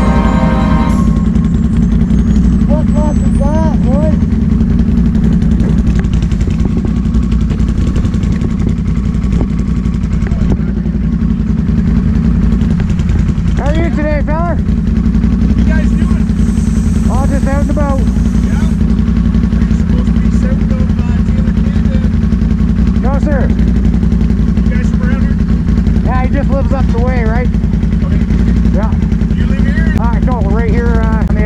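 An ATV engine idling steadily close by, with faint voices over it now and then.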